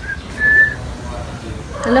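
Someone whistling: a brief note, then a louder steady note held for about a third of a second.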